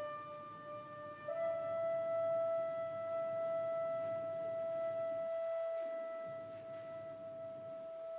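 Alto flute playing a sustained note that steps up to a higher pitch about a second in and is then held long and steady, over very soft strings.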